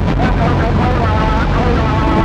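Industrial rock band playing live: a low, pulsing bass repeats under a dense, noisy wall of sound while a voice sings with a wavering pitch.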